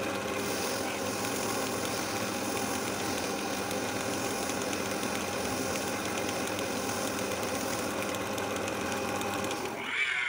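Wood lathe motor running steadily with a hum of several steady tones, while sandpaper is held against the spinning wooden workpiece. At the very end the pitch starts to fall as the lathe is switched off and winds down.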